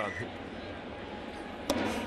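Steady murmur of a ballpark crowd, then near the end one sharp pop as a pitch smacks into the catcher's mitt on a swinging strike.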